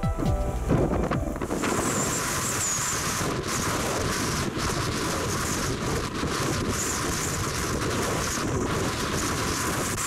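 Background music that gives way about a second and a half in to strong gusting wind buffeting the microphone. The wind is a steady rushing roar with a faint high whistle now and then, the sound of a gale at an exposed summit.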